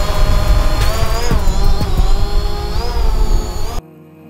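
Small quadcopter drone hovering close by: a buzzing propeller whine of several tones that drift up and down together as the motors adjust, over a heavy low rumble. It cuts off suddenly near the end.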